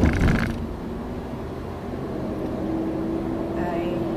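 Car cabin noise while driving: a steady low rumble of road and engine. There is a short loud burst at the very start, and a steady hum-like tone is held for about a second and a half near the end.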